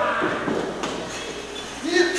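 A few faint footfalls of a wrestler's feet on a wrestling ring's canvas mat as he runs and comes off the ropes.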